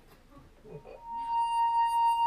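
A wine glass sung by a fingertip circling its rim. Faint rubbing first, then about a second in a clear, pure ringing tone that holds one pitch, its loudness pulsing gently with each pass of the finger.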